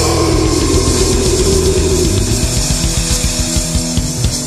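Instrumental passage of a mid-1990s heavy metal song: distorted electric guitars, bass and fast drums with no vocals. A held note slides down in pitch over the first two seconds.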